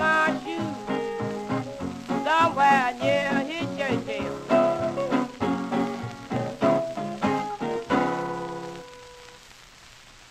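Old blues record playing on a turntable: the song's closing bars, ending on a held final chord about eight seconds in. The chord dies away into the record's faint surface hiss and crackle.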